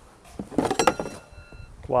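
Rigid plastic lid of a dough-ball storage box being lifted off, with a brief clatter of knocks about three-quarters of a second in, followed by a short, high, steady squeak.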